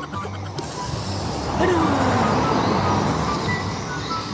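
A man's drawn-out mock-crying wail of "aduh" falling in pitch about a second and a half in, over background music and a steady rushing noise.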